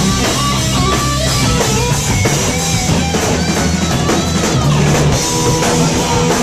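Live rock band playing loud and without a break: an electric guitar playing a lead line over a drum kit and bass.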